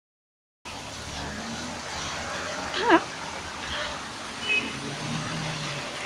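Silence for the first half second, then steady outdoor street ambience with a low hum of distant traffic; a voice briefly says "yeah" about three seconds in.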